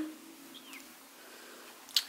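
Quiet room tone in a small bedroom, with the tail of a hummed "hmm" at the start and one faint, short, falling chirp about half a second in.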